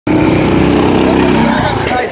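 Go-kart engine running at a steady pitch, weakening near the end.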